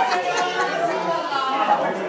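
Indistinct chatter of a group of people talking over one another, several voices at once.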